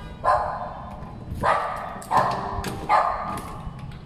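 Small dog barking from behind a closed door, four sharp barks in under three seconds.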